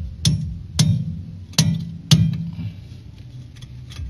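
Four light hammer blows on a steel wheel-bearing outer race, tapping it evenly into its seat in the front hub, each with a short metallic ring. The blows come in two pairs over the first two seconds or so.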